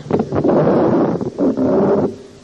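Two loud bursts of rushing noise on the microphone, each under a second long, with a short break between them.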